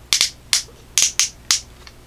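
Plastic tilt hinge of a BlackFire BBM6414 headlamp's ABS bracket clicking through its detents as the lamp angle is adjusted: about six sharp clicks over the first second and a half.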